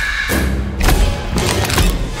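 Trailer sound design: about four heavy thuds in two seconds over a low rumbling music bed. A high held tone fades out in the first half-second.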